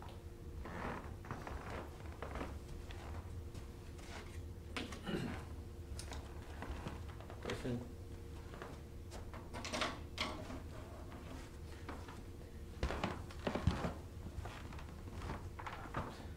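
Classroom room tone with a steady electrical hum, broken by short stretches of faint, indistinct voice. A few sharp knocks come about thirteen seconds in.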